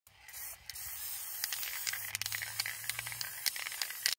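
Aerosol spray-paint can spraying in a steady hiss with many small crackles, pausing briefly about half a second in.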